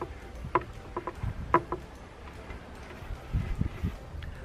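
Wood stain being stirred in its tin, with a few short knocks and clicks of the stirrer in the first two seconds and a low bump later on.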